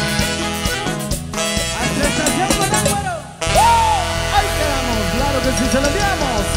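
A norteño band playing a cumbia medley, with a drum kit and sustained melody instruments. The band thins out and dips briefly a little over three seconds in, then comes back in at full strength.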